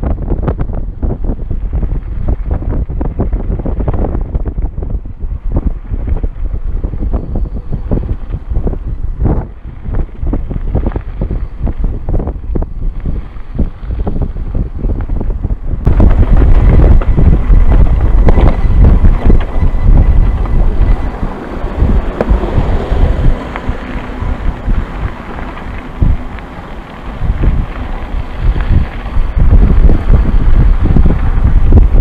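Wind buffeting the microphone of a bike-mounted camera during a fast mountain-bike descent, with many short knocks and rattles from the bike running over a rocky, sandy trail. About halfway through, the sound abruptly becomes louder and brighter.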